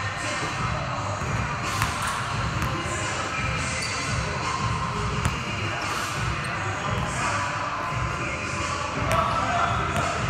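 Basketball bouncing on a hardwood court floor during a dribbling and passing drill, with repeated bounces and sharp impacts of the ball.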